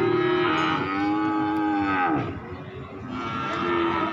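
Cattle mooing: one long moo that drops in pitch as it ends about two seconds in, then a shorter moo near the end.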